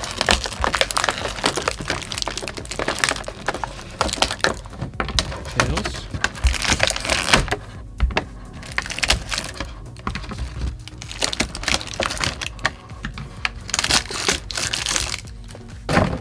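Thin clear plastic packaging tray crinkling and cracking as it is handled and toy figures are pulled out of it: a dense run of irregular crackles and clicks that thins out in the middle and picks up again near the end. Music plays underneath.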